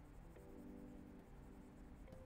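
Faint background music with soft held chords that change about once a second, with the light scratching of a pen stylus on a drawing tablet.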